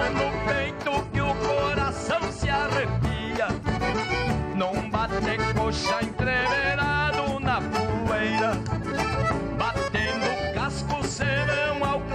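Live gaúcho folk music: accordions over acoustic guitars and a hand-played drum, with a steady beat.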